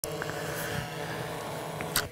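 A steady mechanical hum with a few constant tones, ending in a short click.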